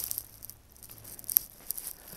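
Light crackling and rustling with a few sharp clicks, one louder click about a second and a half in, from a handheld camera being moved while walking, over a faint low steady hum.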